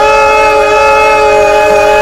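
One loud, long note held at a steady pitch.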